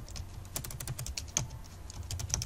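Computer keyboard typing: an uneven run of quick key clicks.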